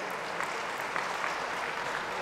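An audience applauding steadily, many hands clapping.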